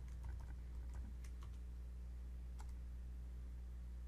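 Computer keyboard typing: a few light, scattered keystrokes, mostly in the first second and a half, with one more past the middle, over a steady low electrical hum.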